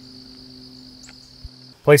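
Steady, even insect chorus with a faint low hum beneath it. It cuts off suddenly near the end.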